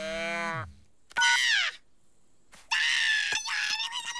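Wordless cartoon character vocal sounds. First a short low pitched cry that rises and falls, then a brief falling squeal about a second in, and from near three seconds a long, high-pitched, wavering scream-like cry.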